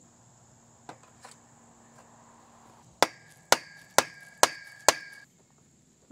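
A mallet strikes the metal frame tubing of a portable garage five times in about two seconds, knocking a roof tube into its joint. Each blow sets the tubing ringing with a clear metallic tone that dies away just after the last strike. Two faint knocks come about a second in.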